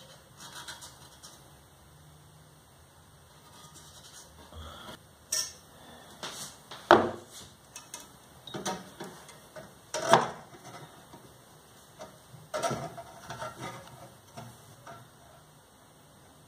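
Scattered sharp clinks, taps and light scrapes of a metal square being set against a steel-tube swingarm and handled while it is marked out. The two loudest knocks come about seven and ten seconds in.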